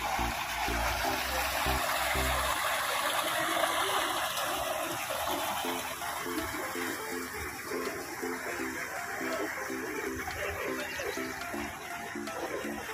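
Spring-fed stream water flowing, a steady rush that eases slightly in the second half.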